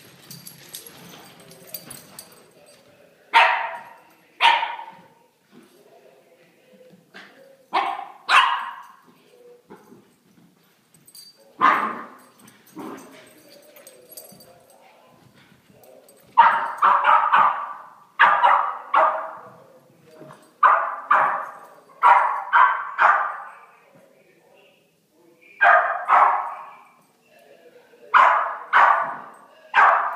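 Small puppies barking in play: single barks spaced a few seconds apart at first, then quick runs of barks from about halfway on.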